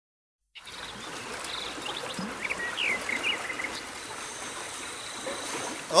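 Outdoor ambience: a steady hiss begins about half a second in, with a few short bird chirps in the middle.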